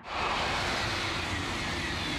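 Eurostar high-speed train running by at speed: a steady rush of air and rail noise that starts suddenly, with a faint, slowly falling whine.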